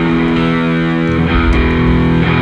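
Punk rock band playing live, loud and steady: distorted electric guitar chords ringing out over bass guitar.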